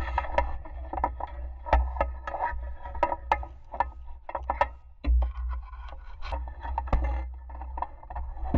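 A camera knocking and scraping against the stone and mortar walls of a hand-dug well as it is lowered down the shaft: irregular clicks and scrapes over a low rumble.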